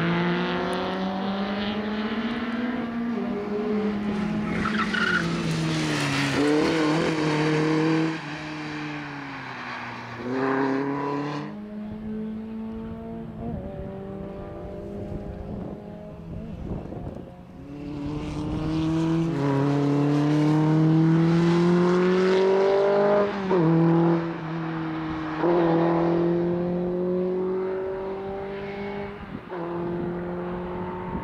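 Škoda 130 RS race car's four-cylinder engine revving hard through the gears from the start, its pitch climbing and dropping back at each shift, over and over. Tyres squeal as the car slides through corners.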